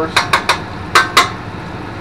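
Metal spatula knocking against the steel flat-top griddle: five sharp metallic clicks in the first second and a bit, three quick ones then two more.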